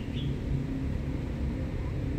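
Steady low rumble of outdoor background noise with a faint steady hum, and a brief high chirp right at the start.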